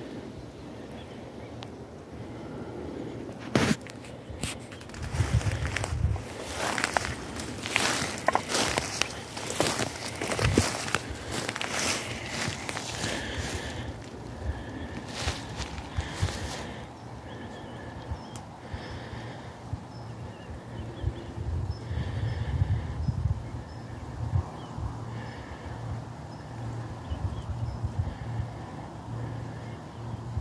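Footsteps pushing through brambles and dry undergrowth, with stems crackling and snapping, densest in the first half, over a low rumble of wind on the microphone.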